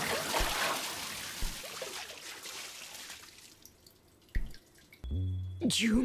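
Water rushing and splashing, starting suddenly and fading away over about three seconds. Low music notes come in near the end.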